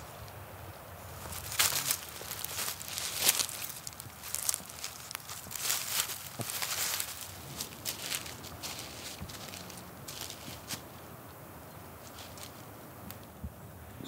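Irregular rustling and crunching of dry leaf litter, like footsteps and movement through dead leaves and brush. It is busiest in the first half and thins out to a quiet background toward the end.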